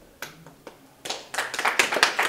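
Hand clapping from the audience: a couple of single claps, then a burst of quick, irregular clapping from several people starting about a second in.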